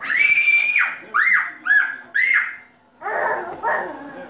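A toddler's excited high-pitched squeals: one long held shriek, then three short squeals that rise and fall, with a lower voice near the end.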